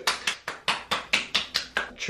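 Palms rapidly patting and slapping the skin of the face to work in skincare, a quick, even run of about five or six pats a second.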